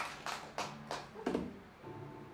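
A person laughs briefly in a few short pulses, then a single acoustic guitar string rings out near the end and fades.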